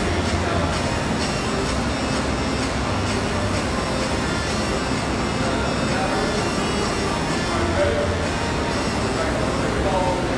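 Air rowing machine's fan flywheel whooshing, surging with each pull stroke about every two to three seconds, over background music and voices.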